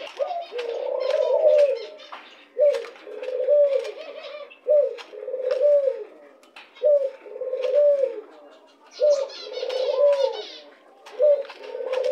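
White domestic dove cooing: a moaning coo about a second long, repeated six times at roughly two-second intervals, each call rising then falling. Sharp clicks are scattered between the coos, from beaks pecking egg crumbs off the plastic feed dish.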